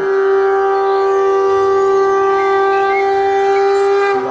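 One long note held steady in pitch on a wind instrument, over faint low music.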